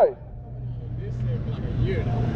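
City street traffic: a car approaching, its tyre and engine noise swelling steadily, over a constant low hum.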